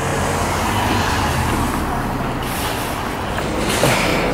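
Steady road-vehicle noise: an engine running low with traffic hiss, and a louder hiss about two and a half seconds in.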